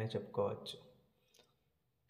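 A man's voice speaking a short phrase, then trailing off into near silence with one faint click about one and a half seconds in.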